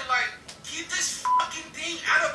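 Voices from the cartoon being played, with a short, steady beep a little over a second in.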